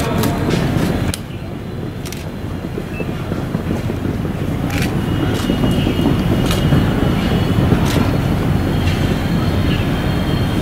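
Steady low rumble of outdoor ambient noise, with a few sharp clicks scattered through it.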